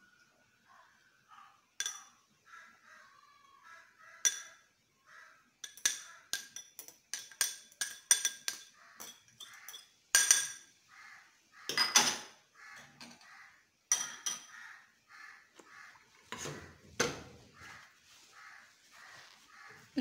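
Metal spoon clinking and scraping against a small glass bowl while grated cheddar cheese is scraped into a pot of mashed potatoes, with many sharp taps that come thickest and loudest in the middle. Near the end come heavier knocks and scraping as utensils work in the metal pot.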